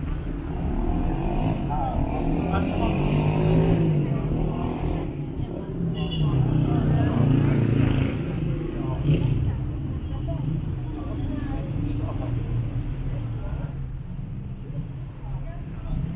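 Busy city street: car traffic running past with a steady low rumble, and people talking close by.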